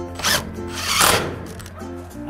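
Cordless drill driving a screw through a PVC downpipe bend into the metal dropper, in two short bursts in the first half. Background music plays underneath.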